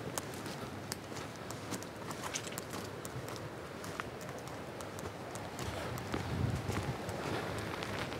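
Footsteps and rustling while walking through bush undergrowth, with many scattered sharp clicks.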